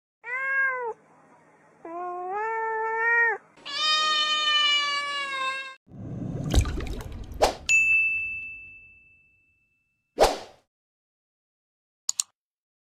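Three cat meows, the third the longest and falling slightly in pitch. They are followed by a noisy rush with two sharp hits, a bell-like ding that rings on for about a second and a half, and a single short click.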